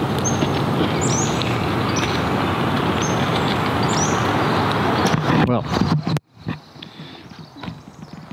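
A bird repeating short, high, falling calls every second or so over a loud steady rushing noise; the rushing cuts off abruptly about six seconds in.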